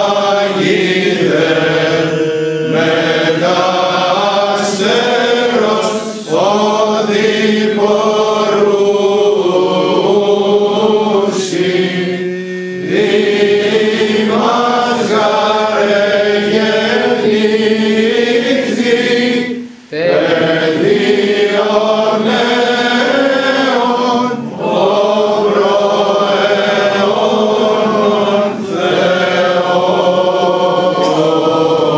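A standing congregation of men and women, Orthodox clergy among them, singing an unaccompanied Greek Orthodox hymn together in chant style, with short breaks for breath between phrases, the longest about twenty seconds in.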